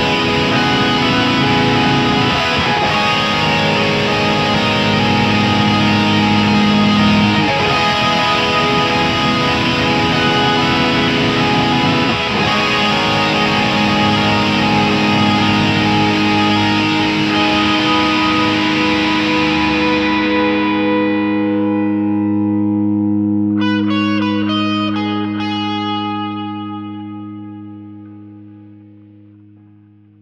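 Music with distorted, effects-laden electric guitar in a dense, loud, sustained wall of sound. About twenty seconds in it fades away, leaving a few long low held notes and a short run of picked notes before it dies out near the end.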